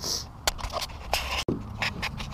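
A hard plastic kayak hatch tray being set back onto the deck: a few light clicks, knocks and scrapes of plastic on plastic.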